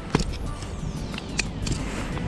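Low wind rumble on the microphone, with a few sharp clicks as fishing gear is handled and set down, and a faint high tone falling steadily in pitch through the middle.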